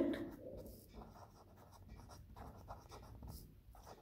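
Felt-tip marker writing on paper: faint, irregular short scratchy strokes as letters are drawn.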